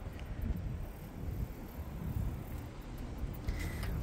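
Outdoor ambience: a low, uneven rumble of wind on the microphone, with no distinct events.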